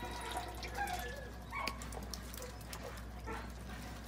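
Muscovy ducks feeding at a water tray and food bowl: wet dabbling and dripping with scattered small clicks of bills. A few short, high peeps come from the ducks.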